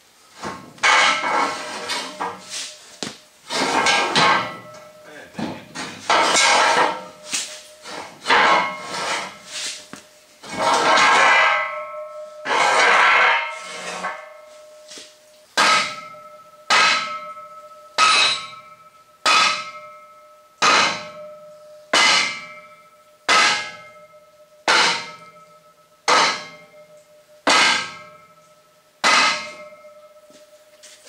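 Steel trailer ramp scraping and rattling against the trailer frame as it is worked loose by hand. About halfway through, a sledgehammer starts striking the steel ramp hinge, about a dozen even blows a little over a second apart, each ringing with a metallic clang, driving out the ramp's hinge bar, which turns out to be bent.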